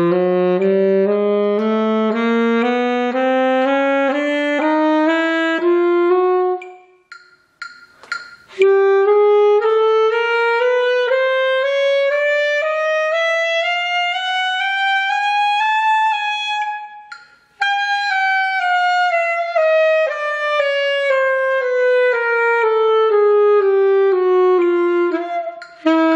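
Saxophone playing a chromatic scale in even half steps, about two notes a second (tempo 120): it climbs from the low register in two runs, with a breath about seven seconds in, then after another short breath it steps back down.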